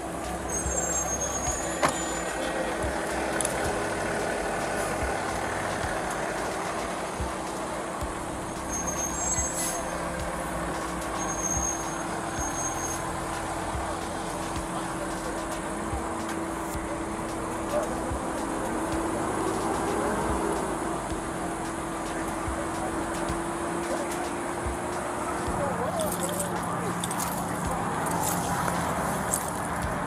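Steady road traffic on a busy multi-lane highway, with a constant engine hum that drops in pitch near the end.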